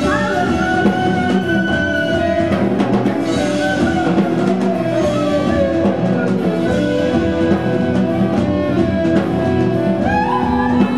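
A live jazz band playing: saxophone lines over drum kit, electric guitar and bass guitar.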